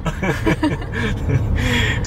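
Indistinct voices with a chuckle, over a steady low rumble inside a car.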